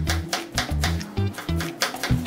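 Chef's knife chopping a red onion on a plastic cutting board: a quick, uneven series of sharp taps. Background music with a bass line plays under it.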